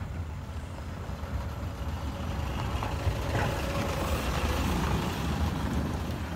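Pickup truck driving past on a dirt road: a low engine and tyre rumble that grows louder as it approaches and is loudest in the second half.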